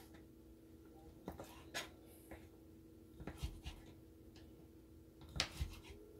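Kitchen knife slicing smoked sausage on a plastic cutting board: faint, irregular taps as the blade goes through and meets the board, a little louder near the end.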